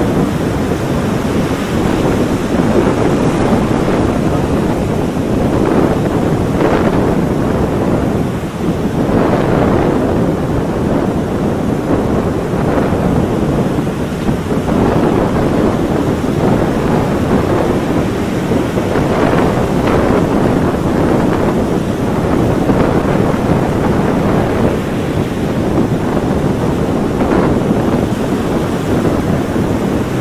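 Loud, steady rushing noise with no pitch, swelling and dipping slightly now and then.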